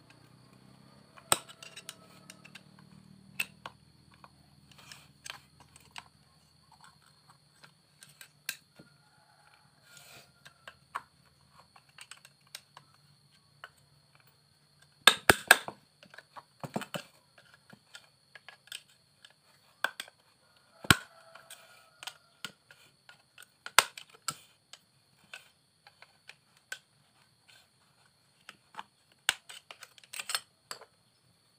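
Irregular metal clicks and taps of a screwdriver working at the spring-loaded shoes of a Honda Vario scooter's centrifugal CVT clutch, with a quick cluster of sharp clatters about halfway through.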